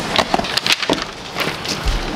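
Cardboard shipping box being opened by hand: the flaps crackle and creak, with paper rustling as a sheet is pulled out, in irregular crackles and clicks.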